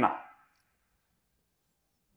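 The end of a man's amplified speech, its echo in the room dying away within about half a second, then near silence: room tone.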